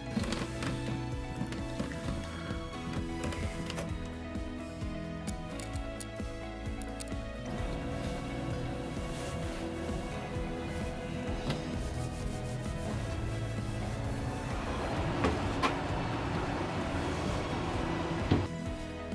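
Soft background music with steady sustained notes. Light handling and cleaning noises sit under it, with a noisier stretch and two sharp knocks about three-quarters of the way through.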